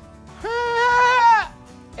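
A voice holding one high note for about a second, with a slight rise in pitch, over background music.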